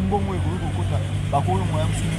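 A man talking, over a steady low hum in the background.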